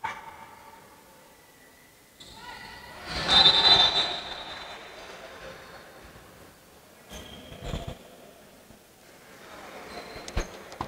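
Sounds of a basketball free throw in an echoing sports hall: a sharp thud at the start, then a loud burst of shouting voices about three seconds in as the free throw is made, and a dull thud near the end.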